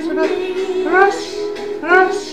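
Singing over music, the voice swooping upward in pitch twice.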